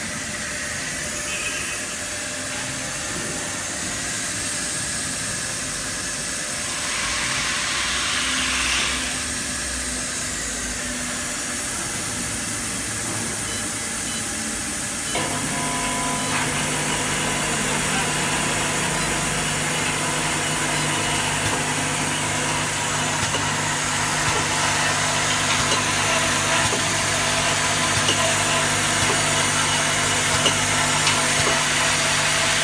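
Compressed air hissing steadily through a pneumatic filter-regulator. About halfway through, the 10 ml eye drop filling and capping machine's motors start and run steadily with a low hum.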